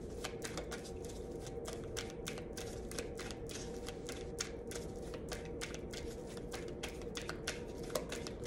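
A deck of tarot cards being shuffled by hand, cards slipped from one hand to the other in a run of quick, irregular light clicks and flicks.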